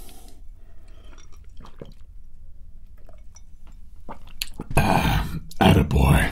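A man drinking water from a glass close to the microphone, with soft swallowing and small liquid sounds. Near the end come two loud, breathy bursts of breath.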